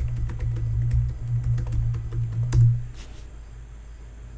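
Computer keyboard keys being typed in a quick run of clicks, ending with a firmer keystroke about two and a half seconds in, over a low steady hum that stops about three seconds in.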